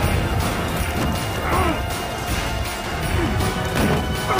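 Film fight sound effects, blows and crashes as two men grapple through metal railings, over action score music.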